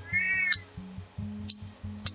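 A cat meows once, a short call rising and falling in pitch, over background music with a steady bass line.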